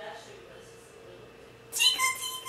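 A toddler's sudden, loud, high-pitched squeal near the end, held on one slightly falling note, after a few quiet seconds.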